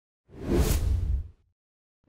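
Cinematic whoosh sound effect for a title-card transition: a swell of rushing noise with a deep rumble underneath, lasting about a second. A second, shorter whoosh begins at the very end.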